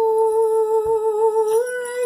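A young woman's voice sings a long held note on a vowel, without words, then steps up slightly to a new pitch about a second and a half in.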